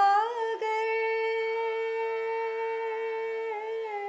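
Devotional song music: a singer holds one long hummed note over a steady drone. The note slides up at the start, holds level, and dips slightly near the end.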